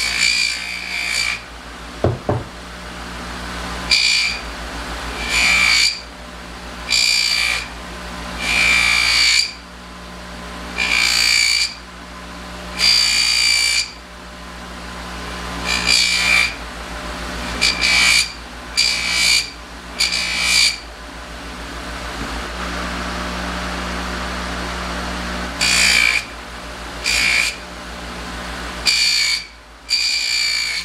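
Bench buffer motor running with a steady low hum while a brass piano pedal is pressed against its rouge-loaded buffing wheel. Each press makes a loud, high hiss lasting up to about a second and a half, repeated every one to two seconds.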